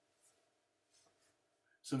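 Near silence: faint room tone with a steady low hum, then a man's voice begins speaking just before the end.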